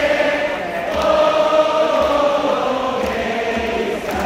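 A stadium crowd of Yokohama DeNA BayStars fans singing the team song together, a mass of voices holding long notes like a huge choir.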